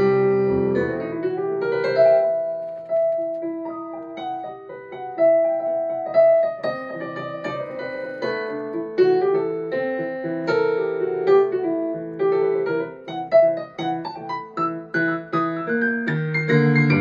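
Jazz piano played on a Yamaha S90 ES digital stage piano: a flowing melody over chords, with quicker, sharply struck notes in the last few seconds.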